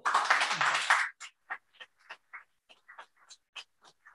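Audience applause: dense for about a second, then thinning to scattered single claps that die away.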